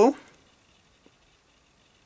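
Near silence: room tone, with one faint short tick about a second in.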